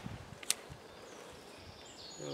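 Mikov Fixir folding knife blade shaving curls from a wooden stick: a few faint scrapes and one sharp click about half a second in.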